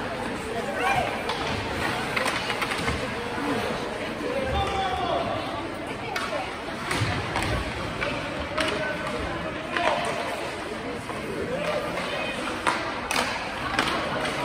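Ice hockey rink ambience: indistinct voices of spectators and players echoing in the arena, with skates scraping the ice and several sharp clacks of sticks and puck.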